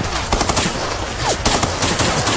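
A firefight: several rifles firing rapid, irregular shots and automatic bursts, with a short falling whine just past the middle.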